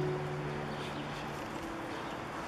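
Music with held, sustained notes: a low note fades out about one and a half seconds in, over steady outdoor background noise.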